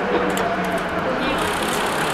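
Busy railway-station ambience: indistinct voices over a steady low hum.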